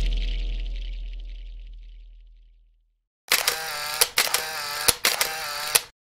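A deep, booming intro sound effect fades away over the first two and a half seconds. After a short silence comes a camera sound effect: a whirring, pitched drone broken by several sharp shutter clicks.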